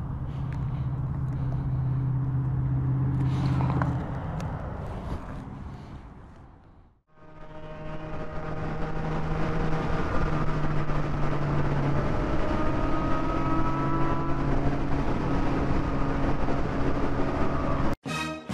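A sportbike engine idles steadily for about seven seconds, then fades out. After that a Yamaha motorcycle cruises in sixth gear at highway speed, its engine running steadily under a constant rush of wind and road noise.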